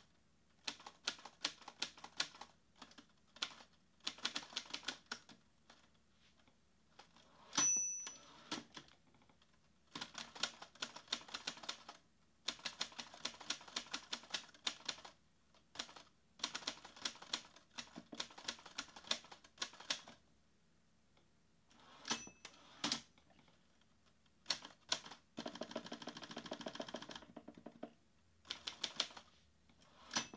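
Manual typewriter typing in bursts of keystrokes with short pauses between them. A short ringing ding, the typewriter's margin bell, sounds about eight seconds in and again about twenty-two seconds in.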